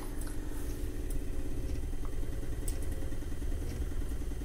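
Two electric powder tricklers, an AutoTrickler V3 and a SuperTrickler, running together with a steady motor hum as they trickle powder onto their scales toward the target charge weight. A few faint ticks sound over the hum.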